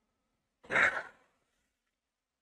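A man's exasperated sigh: one breathy exhale of about half a second, starting a little over half a second in.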